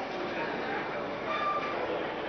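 Indistinct chatter of a crowd of people talking at once over a steady rush of background noise.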